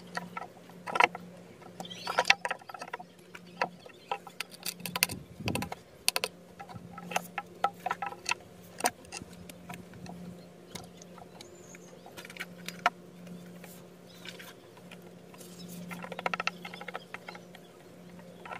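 Scattered light clicks, taps and scrapes of porous volcanic rocks being handled and pressed into place on a stone slab, with a denser stretch of fine rattling about sixteen seconds in as sand is scattered over the joints. A faint steady hum runs underneath.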